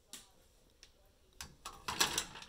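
A few faint clicks, then several sharp metallic knocks near the end as metal tongs grab a crushed aluminium soda can out of a saucepan of ice water, clattering against the can, the ice and the pan.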